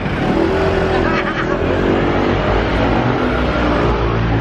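A motor vehicle passing close by on the street, its engine running loudly with a note that slowly falls in pitch, over a low traffic rumble.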